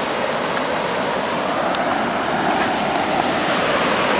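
Wide river waterfall pouring over rock ledges: a steady, even rush of white water.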